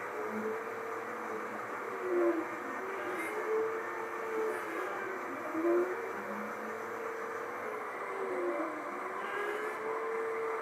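Stepper motors of a Monport Onyx 55 W CO2 laser whining in repeated rising and falling glides as the laser head traces a circular cut. Underneath is the steady rush of the machine's exhaust fan.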